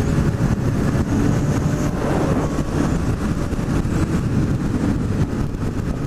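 Honda CB600F Hornet's inline-four engine running steadily at highway cruising speed, heard from the bike itself under a dense rush of wind and tyre noise.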